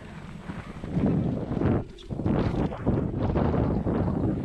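Hardtail mountain bike rolling fast over rough dirt: tyres rumbling and the bike rattling and clattering over the bumps, with wind buffeting the chest-mounted action camera's microphone. It gets louder about a second in and drops briefly just before the halfway point.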